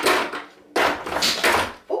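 Plastic highlighter markers clattering and rolling across a tabletop as the swinging apple knocks them over. It comes in two rattling bursts of about a second each.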